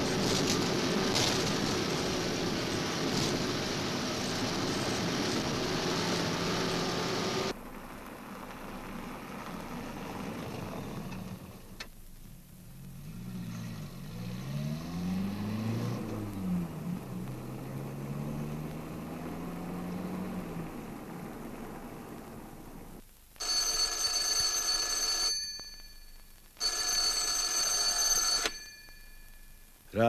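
A telephone ringing: two long rings near the end. Before it comes a steady noise that cuts off abruptly about seven seconds in, then a fainter low drone that rises and falls in pitch.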